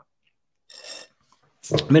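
A short raspy slurp through a metal drinking straw from a steel mug, lasting about a third of a second. A man's voice starts near the end.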